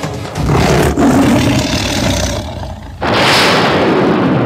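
A tiger roaring twice, as a dramatic sound effect: one long roar starting about half a second in, then a second one about three seconds in.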